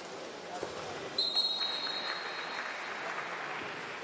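Referee's whistle: one short, high blast about a second in, marking the goal in a water polo match, over a steady background of pool-hall crowd noise.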